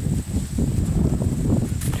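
Low, uneven rumble of wind buffeting a handheld camera's microphone outdoors.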